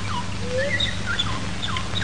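Small birds chirping: a run of short, high, falling chirps, two or three a second, over a steady low hum in the old film soundtrack.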